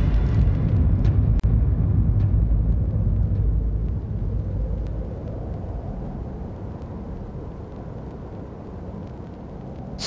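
A deep, steady low rumble, loudest in the first four seconds and then slowly fading, with a few faint clicks over it.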